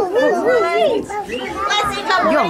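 Voices of young children and adults together in a sing-song, with repeated rising-and-falling notes in the first second and higher children's voices near the end.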